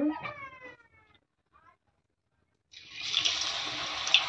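Radish-leaf pakora batter frying in hot refined oil in a kadhai. The sizzle starts suddenly about two-thirds of the way in as the batter goes in, a steady hiss with sharp crackles and pops.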